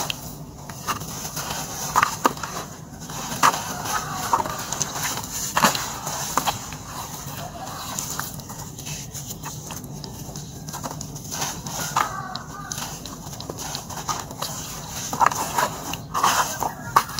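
Hands squeezing and breaking up lumps of wet red sand in a plastic tub of muddy water: wet squelches and gritty crumbling crunches. Faint voice-like calls can be heard in the background.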